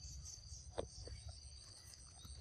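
Insects chirring steadily at a high pitch. A sharp click comes a little under a second in, followed by a couple of fainter ticks, over a low rumble.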